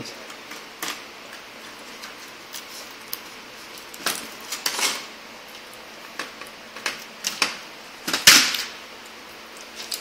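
An HP Pavilion dv6000 laptop motherboard being unplugged and lifted out of its plastic and metal chassis: scattered clicks and knocks with a few short scraping clatters, the loudest a little after eight seconds in.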